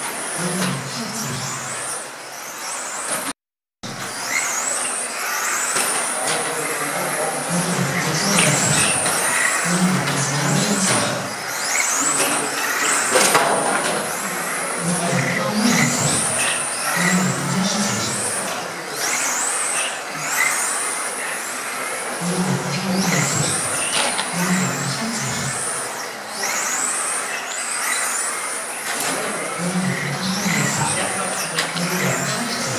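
Electric 1/10 touring cars with 17.5-turn brushless motors lapping a track: a high motor whine rises in pitch again and again as the cars accelerate. The sound cuts out briefly about three and a half seconds in.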